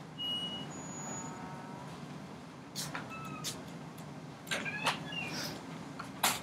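Quiet classroom room tone: a steady low hum, with a couple of brief high squeaks near the start and a few faint knocks and squeaks in the second half as students work at their desks.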